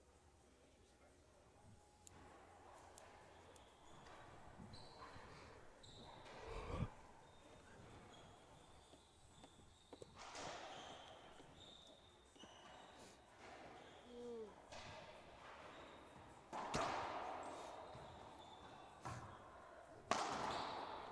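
Faint, sparse sharp knocks of a racquetball being served and rallied, the hollow ball striking the racquets and the court walls and floor, the loudest thud about seven seconds in. Short high squeaks, typical of court shoes on the hardwood floor, come between the hits.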